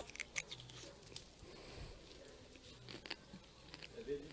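A man biting into a green umbu fruit (Spondias tuberosa) close to the microphone and chewing it: a cluster of crisp crunches in the first half second, then faint chewing and mouth clicks.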